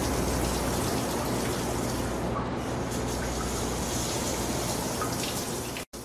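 Steady rush of running water, with a low hum beneath it; it cuts off abruptly just before the end.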